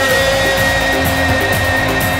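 Worship music with long held notes over a low bass line.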